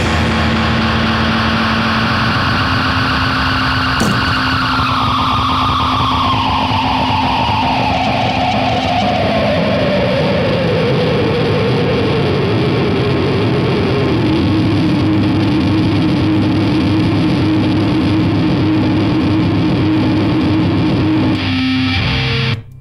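Distorted electric guitar drone through effects, sustained without a beat: a high tone glides slowly downward from about four seconds in and then holds low over a steady bass hum. There is one sharp hit about four seconds in, and the sound drops away just before the end.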